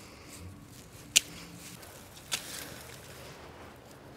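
Garden snips cutting gomphrena stems: a sharp snip about a second in and a softer second one about a second later, over faint rustling of foliage.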